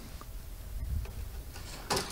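A coin turning the quarter-turn fasteners on a loudspeaker's perforated metal grille: a few faint clicks over a low rumble, with a short sharper click or rattle near the end as the grille comes loose.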